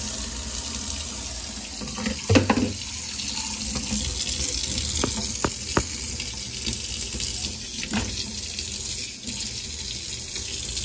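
Tap water running in a steady thin stream into a stainless steel sink, with a few short knocks, the loudest about two and a half seconds in.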